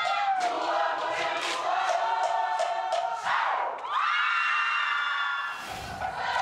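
A large group of voices singing a Samoan group song together, the notes held and sliding in unison, with the crowd cheering over it.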